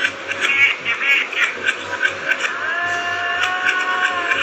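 A song played backwards through a speaker: reversed singing and accompaniment with choppy, clipped attacks, then a long held sung note that swells in and holds from a little past halfway.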